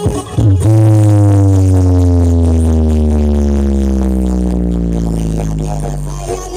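Loud electronic music played through stacked outdoor sound-system speakers. After a brief break, one deep synth bass note starts about half a second in and slides slowly down in pitch for about five seconds, fading a little as it goes.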